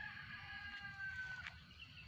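A rooster crowing faintly: one long, drawn-out call that sinks slightly in pitch and breaks off about one and a half seconds in.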